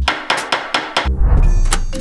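Hammers striking wooden boards, a quick irregular run of knocks, over background music with a beat.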